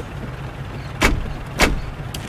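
Two mechanical clunks about half a second apart as a taxi meter's flag lever is pulled down, over a faint low rumble.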